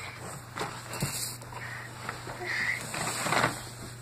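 Soft knocks and rustling as plastic shape-sorter blocks are handled in a cardboard box, over a low steady hum.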